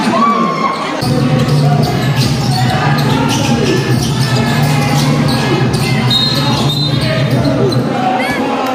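Basketball game sounds: the ball bouncing on the hard court among players' and spectators' shouts and chatter, over a steady low hum. A brief high tone sounds near the end.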